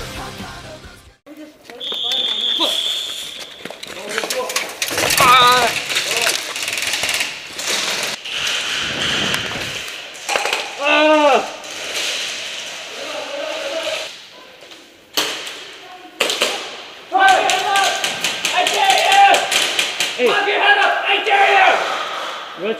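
A rock song fades out, then players shout inside an indoor airsoft arena amid rapid runs of sharp clicks from airsoft guns and knocks on plywood walls.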